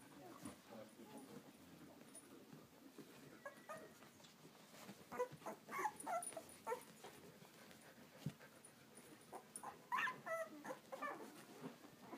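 Eleven-day-old Samoyed puppies whimpering and squeaking: short, faint, wavering calls, in a cluster about five to seven seconds in and another about ten seconds in.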